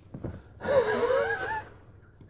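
A person's high-pitched, wheezing laugh, about a second long, its pitch wavering up and down.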